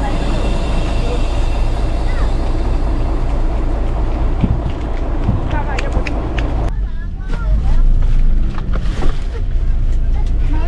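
Bus engine idling with a steady low rumble, with people talking in the background and a few knocks as passengers board.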